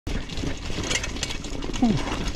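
26-inch Specialized hardtail mountain bike rattling along a rough, leaf-covered trail: chain slap and frame rattles in quick, irregular clicks over a steady rumble from the tyres. A short, falling "ooh" from the rider comes near the end.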